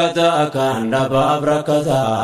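Afaan Oromo nashiida (Islamic devotional song) by a male singer, who holds a long chanted line with shifting pitch over a steady low drone.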